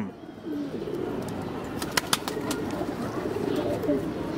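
Domestic pigeons cooing steadily in the loft, a low continuous murmur, with a few short clicks about halfway through.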